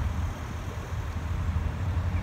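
Wind buffeting the microphone: a low, unsteady rumble with no distinct events.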